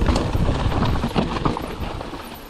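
Mountain bike rattling down a rocky dirt trail: tyres rolling over loose rock and dirt, with rapid, irregular knocks and clatter from the bike over a low rumble.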